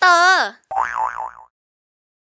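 Cartoon-style sound effects: a pitched tone sliding down, then a wobbling, warbling boing-like tone that cuts off about a second and a half in.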